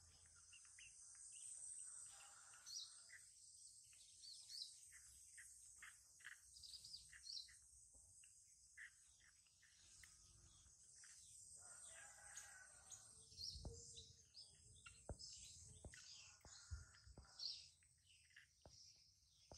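Faint outdoor ambience: small birds chirping sporadically over a steady, thin, high insect hum. A few soft clicks and thumps come in the second half.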